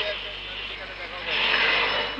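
Voices over street traffic noise, loudest in a swell from about halfway through.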